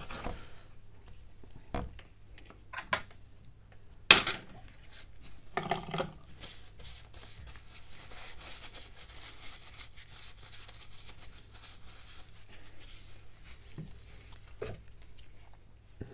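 Sparse small clicks and taps of phone parts and tools being handled on a silicone repair mat over faint background hiss, the sharpest click about four seconds in and a light knock near the end as the phone frame is lifted.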